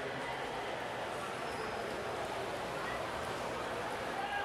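Steady indoor-pool race background: swimmers splashing in the lanes under a low wash of spectators' voices.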